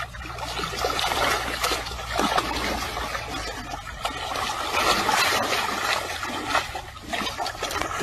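Shallow muddy water sloshing and splashing as a baby elephant rolls and kicks in it: a continual run of small splashes that swells and fades.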